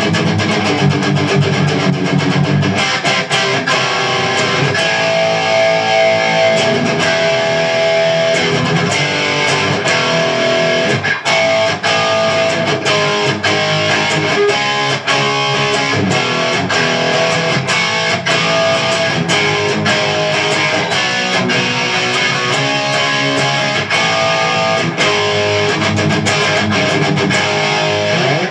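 Carvin CT-6 electric guitar played through a Marshall JVM 210H head and 1960A 4x12 cabinet on the distortion channel: fast, heavily distorted lead playing with dense picked notes, cutting off right at the end.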